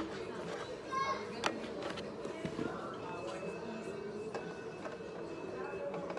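Shop-floor background of distant voices and faint music, with a single sharp click right at the start and a thin steady tone in the second half.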